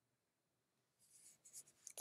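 Near silence, then faint scratchy rustling in short strokes during the second half.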